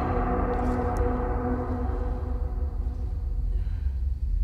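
A bell toll from a horror film trailer's soundtrack, ringing out with several steady tones that fade away over about three seconds, over a steady low rumble.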